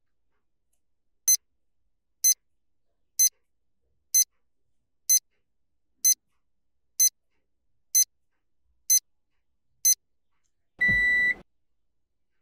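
Countdown timer sound effect: ten short high ticks about a second apart, then a single short alarm-clock beep. It counts off and ends a ten-second hold.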